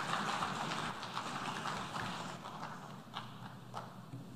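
Applause from the assembly, steadily dying away and thinning to a few scattered claps near the end.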